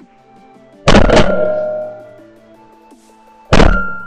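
Two loud shotgun shots, one about a second in and one near the end, each a sharp report that rings away over about a second. Background music plays underneath.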